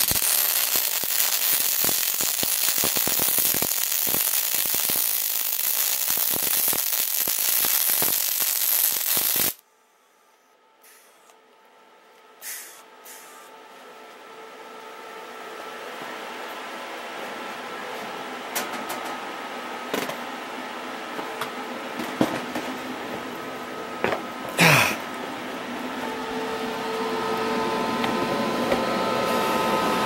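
MIG welding arc from a Hitbox Multimig 200 Syn in spray transfer at about 21 volts: a loud, steady hiss with fine crackle that cuts off suddenly about nine and a half seconds in, as the welder runs out of wire. A quieter steady hum with a few scattered clicks follows.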